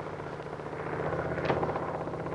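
Drone of a propeller aircraft's engines, a steady pulsing rumble that grows louder as the plane approaches, with a single sharp knock about one and a half seconds in.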